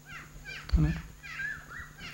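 A bird chirping in short high calls that slide up and down in pitch, a few near the start and a longer wavering call in the second half.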